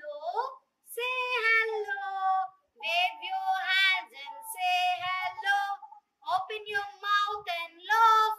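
A woman and young children singing a children's song together, in short phrases with brief gaps between them.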